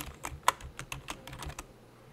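Typing on a computer keyboard: a quick run of about ten key clicks over a second and a half, then it stops.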